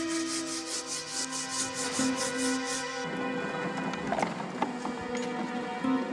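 Background music of held tones over a rhythmic rasping, about four or five strokes a second: a tool working the rough surface of a foam sculpture. The rasping stops about halfway and gives way to a rougher scraping noise with a few knocks.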